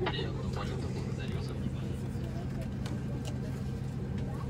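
Steady low hum inside a Boeing 737-8 airliner cabin parked before departure, under a faint murmur of passengers' voices.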